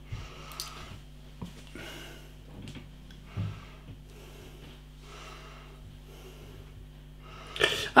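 Quiet room with faint breaths and a few light knocks and clicks as a glass beer bottle and glass are handled, one soft thump about three and a half seconds in. Near the end, beer starts pouring from the bottle into the glass.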